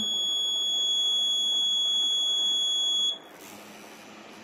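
Electronic alert buzzer on an accident-detection circuit board sounding one steady, unbroken high-pitched tone, signalling a detected crash. It cuts off suddenly about three seconds in.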